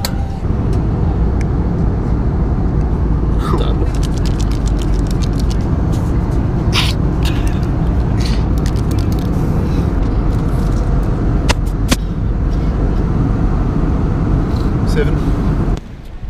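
Loud, steady rumble of an airliner cabin with the jet engines running, broken by scattered short clicks. The noise cuts off suddenly near the end.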